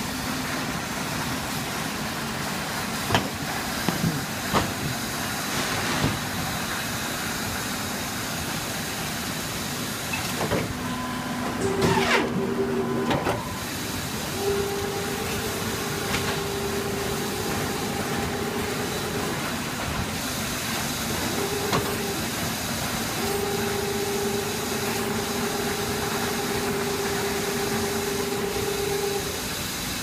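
Industrial paper guillotine cutter at work: a steady machine hum that comes on in two long stretches of several seconds, a louder burst of machine noise about a third of the way in, and a few sharp knocks early on as the paper stack is handled.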